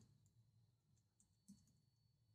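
Near silence, with a few faint clicks of computer keyboard keys being typed.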